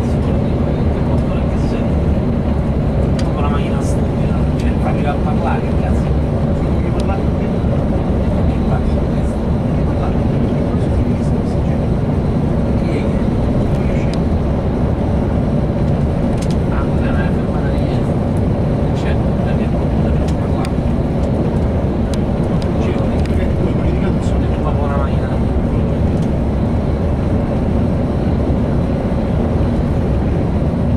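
Steady low rumble of a motor coach travelling at road speed, engine and tyre noise heard inside the passenger cabin.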